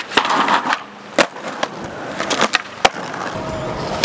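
Skateboard wheels rolling on pavement, broken by sharp clacks of the board popping, flipping and landing. A quick cluster of clacks comes in the first second, then single sharp cracks about a second in and near three seconds.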